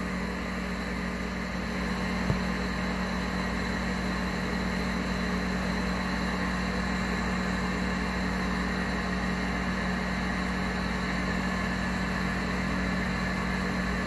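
A domestic cat purring close to the microphone as she presses against the person petting her, a steady low rumble throughout, with one sharp click about two seconds in.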